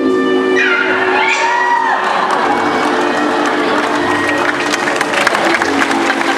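Show music playing with an audience cheering and applauding; the clapping thickens from about two and a half seconds in. A sliding tone rises and falls about a second in.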